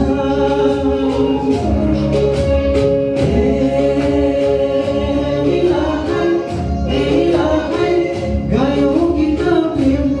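Man singing a Nepali Christian worship song into a microphone, holding long notes over backing music with a beat.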